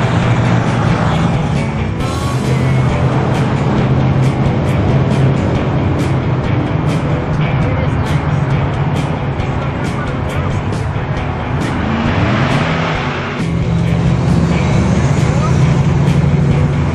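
Classic cars and pickup trucks driving slowly past one after another, their engines running steadily, with one engine note rising about twelve seconds in. Music plays along with the engines.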